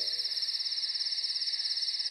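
Crickets chirping in a steady, fast-pulsing trill.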